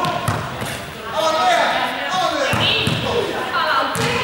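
Young people's voices calling out in a sports hall, with a few dull thuds of a ball being hit and bouncing on the floor.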